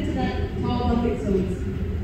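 A person speaking indistinctly over a steady low rumble.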